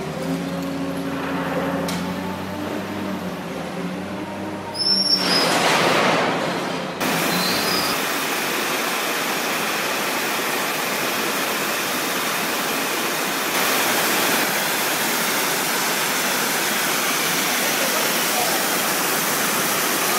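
A Caterpillar wheel loader's diesel engine runs steadily, with a loud rush of noise for about two seconds near the fifth second. From about seven seconds in, an ultra-high-pressure water-jetting rotary surface cleaner blasts concrete at 40,000 psi, a steady, even hiss that gets a little louder halfway through.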